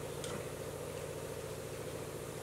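A steady low mechanical hum runs under the room, with a faint click about a quarter of a second in.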